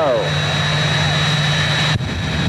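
Turbojet engines of jet dragsters running at high power on the starting line: a steady low drone with a thin high whistle. The rushing noise grows near the end as the afterburners light for the launch.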